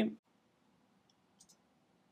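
Two quick, faint clicks from a computer mouse button about a second and a half in.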